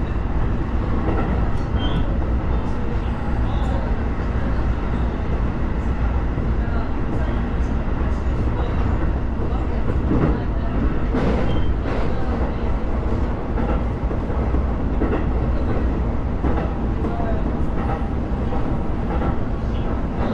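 Inside a Sotetsu commuter train running at about 70 km/h: a steady low rumble of wheels on rails, with scattered sharp clicks.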